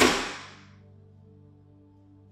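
A telephone handset hung up hard on its cradle: one sharp knock that rings out over about half a second, followed by a soft music drone of held low notes.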